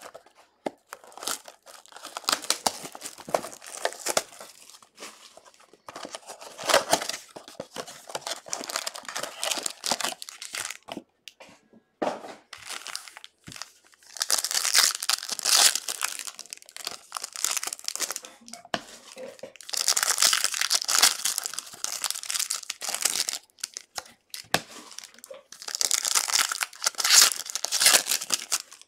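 Wrapping of a 2020 Panini Prizm football card box and its foil packs crinkling and tearing as they are opened by hand, in repeated bursts, loudest in the second half.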